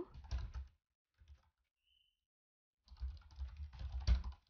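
Computer keyboard typing: a short run of keystrokes at the start, a pause of about two seconds, then a faster, denser run of keystrokes through the last second.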